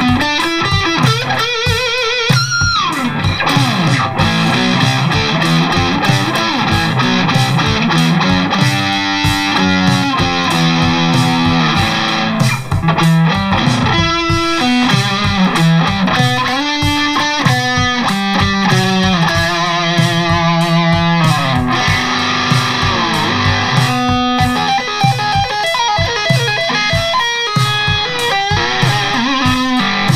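Custom Charvel So-Cal electric guitar played through an Eleven Rack amp modeller: improvised lead lines with string bends and vibrato, over a programmed drum backing track.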